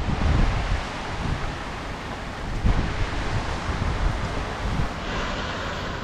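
Wind buffeting the microphone in uneven low gusts over a steady hiss of rain, in typhoon weather.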